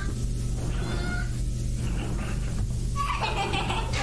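Horror-video sound design: a steady low drone under faint, thin cry-like tones, with a louder wavering wail about three seconds in.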